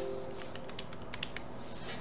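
Computer keyboard keys tapped several times in quick, uneven succession: a string of backspace presses erasing a typed command.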